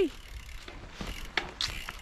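Faint, scattered clicking of a mountain bike's freewheel ratchet as the bike rolls over grass.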